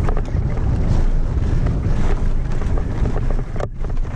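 Wind buffeting the microphone of a mountain bike rider's action camera at speed, under the rumble of tyres on a dirt trail and the bike rattling and clacking over bumps. The sound cuts out for a moment near the end.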